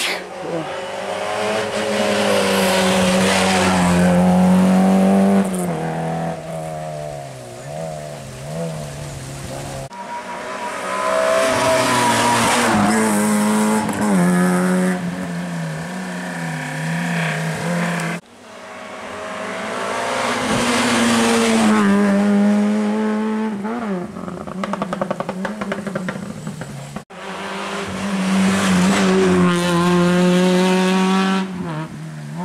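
Rally cars driven hard up a tarmac special stage, one after another: each engine revs high, drops in pitch at every gear change and lift-off, then climbs again as the car approaches and passes. About three-quarters of the way through there is a burst of rapid crackling.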